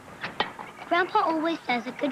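Two sharp clicks near the start, then a voice in short pitched calls that bend in pitch, with no words the recogniser could make out.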